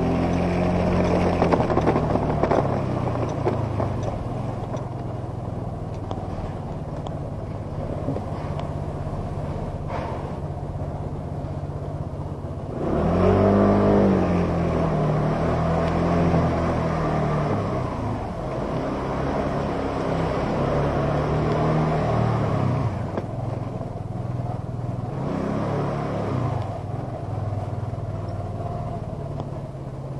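Motor scooter engine running under way, its pitch rising and falling with the throttle. There is a louder burst of acceleration about halfway through, and the engine settles lower and steadier near the end as the scooter slows.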